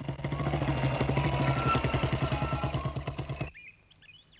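Motorcycle engine running with an even, rapid beat as the bike rides in, then switched off about three and a half seconds in.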